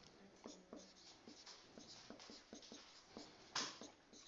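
Faint strokes and taps of a marker pen writing figures on a whiteboard, with a short, louder rustle near the end.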